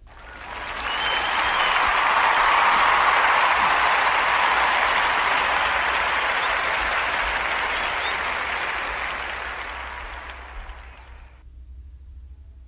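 Crowd applause that swells up over the first two seconds, holds steady, then fades out and stops about eleven seconds in, with a faint whistle or two near the start.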